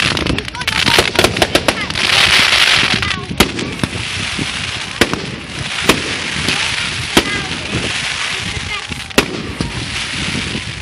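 Fireworks going off: a rapid run of sharp bangs and crackles in the first second or two, then a loud crackling hiss with single sharp bangs every second or so.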